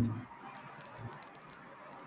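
A man's word trails off, then a quiet pause with a few faint, sharp clicks.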